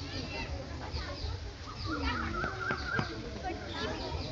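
Indistinct voices of people talking in the background, with short high chirping calls over them.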